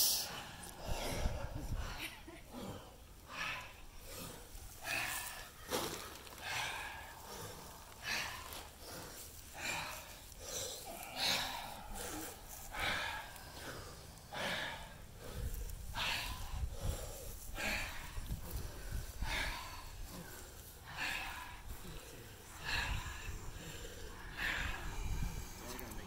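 People in an ice bath breathing loudly and deliberately: repeated deep inhales and long exhales blown out through pursed lips, one breath every second or two. It is controlled breathing used to ride out the cold of the ice water.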